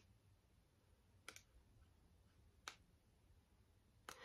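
Near silence with three faint clicks: two close together a little over a second in, and one more under three seconds in.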